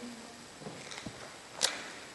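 Quiet room tone in a pause in speech, with one short sharp click about a second and a half in.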